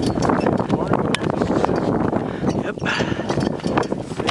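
Wind buffeting the camera microphone: an irregular, gusting rumble with crackles, and people's voices, including a short "yep" near the end.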